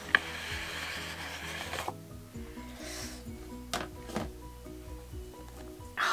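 Soft background music of short, stepping notes. Over the first two seconds a cardboard box scrapes as it slides out of its cardboard sleeve, starting with a small click, and there are a couple of light taps later.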